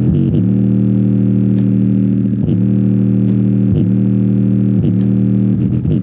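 JBL portable Bluetooth speaker playing bass-heavy music loudly: sustained deep bass notes, broken several times by short downward-sliding bass drops.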